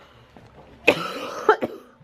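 A person coughing: a sudden cough about a second in and a second one half a second later.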